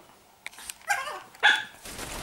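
A small dog barking twice in short, sharp yaps about a second apart.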